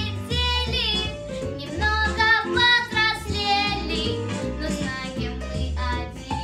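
A young girl singing a jazz-style pop song solo over a backing track with a prominent, repeating bass line.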